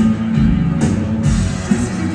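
Live rock band playing an instrumental passage through a PA: electric guitars over a drum kit, with a few cymbal hits.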